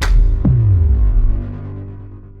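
Cinematic logo sting sound effect: a sharp boom hit at the start, then a falling bass sweep about half a second in, with a low rumble that fades away.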